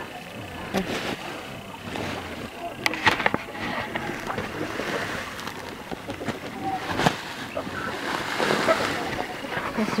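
Woven plastic feed sack rustling and crinkling as it is handled and lifted, with scattered light taps and knocks.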